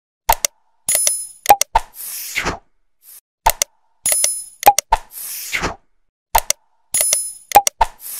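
Sound effects for an animated 'Subscribe' button: a couple of sharp clicks, a short bell ding and a whoosh. The set repeats three times, about every three seconds.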